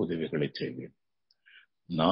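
A man speaking in Tamil for about the first second, then a pause of about a second that holds only a faint click and a brief soft hiss.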